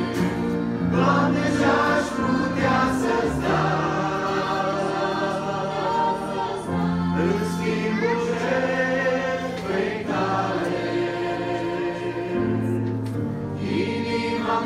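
Church choir singing a Romanian hymn in parts, holding long chords that change every few seconds.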